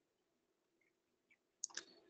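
Near silence with a faint steady hum, and two quick faint clicks close together near the end.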